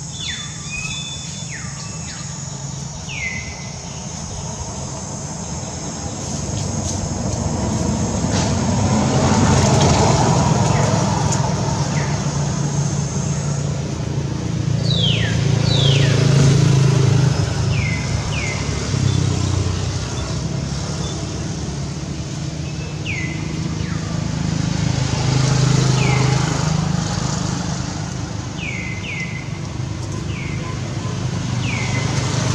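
Motor vehicles passing nearby: a low engine hum that swells and fades several times. Short, high, downward-sweeping chirps come every few seconds over it, and a steady high buzz runs through the first half and then stops.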